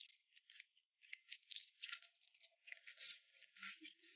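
Faint, close-up wet chewing of a cold boneless duck foot in chili oil: an irregular run of quick, sharp mouth clicks and smacks.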